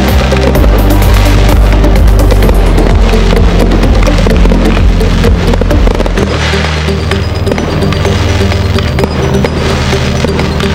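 Music soundtrack of a musical fireworks display, with aerial firework shells bursting and crackling over it. The low notes of the music change about six seconds in.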